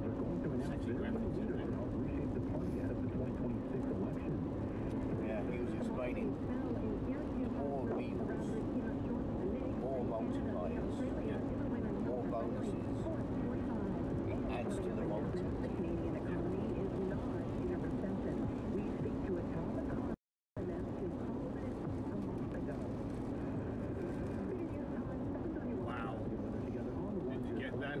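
Steady road and engine noise heard from inside a car driving on a wet highway, with faint, indistinct voices underneath. The sound cuts out completely for a moment about twenty seconds in.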